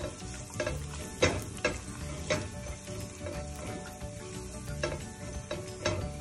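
Minced garlic sizzling in hot oil in a stainless steel pot, stirred with a silicone spatula that scrapes and knocks against the pot several times.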